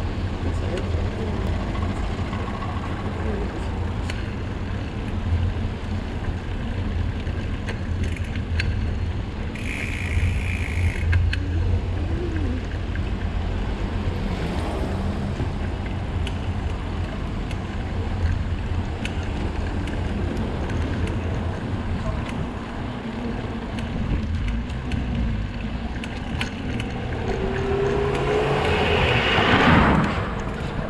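Wind rumbling on the microphone of a camera riding on a moving bicycle, with tyre and street noise underneath. A brief high tone sounds about ten seconds in, and the noise grows louder near the end.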